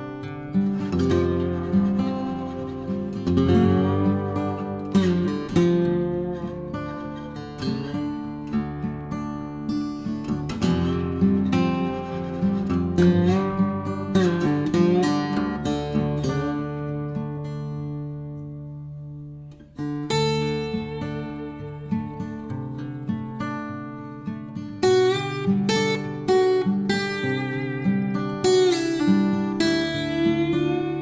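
Background music on acoustic guitar: a steady run of picked notes and chords. About two-thirds of the way through, one chord rings out and fades almost to nothing before the playing starts again.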